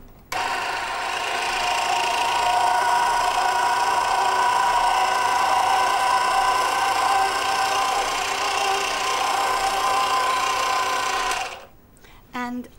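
Electric mincer attachment on a stand mixer, its motor running steadily as strips of orange peel are fed through the coarse mincing plate. It is switched on just after the start and cuts off shortly before the end.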